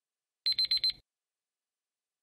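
Electronic alarm-clock beeping from a quiz countdown timer running out: four rapid high beeps in about half a second, then it stops.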